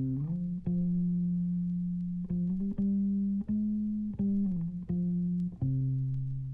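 Music starting out of silence: a low guitar line of long held notes, sliding from one pitch to the next about every second.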